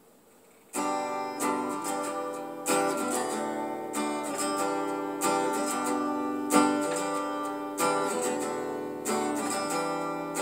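Acoustic guitar strummed as a song's introduction, starting about a second in, with a strong strum roughly every second and a quarter.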